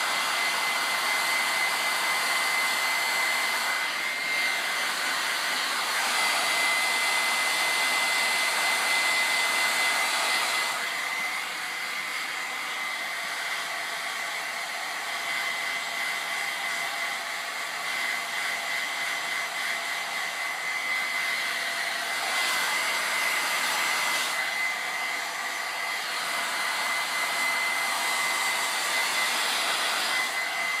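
Hand-held hair dryer blowing steadily with a thin high whine. It is louder for roughly the first ten seconds, quieter through the middle, then louder again as it is moved about.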